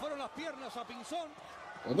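A man laughing softly in a quick run of short 'ha' pulses that trail off after about a second.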